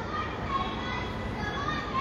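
Background hubbub of distant voices over steady outdoor urban noise, with no close voice.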